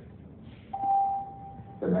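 A single electronic chime tone sounds about a second in, held and fading over about a second. This is typical of a subway station public-address chime before an announcement.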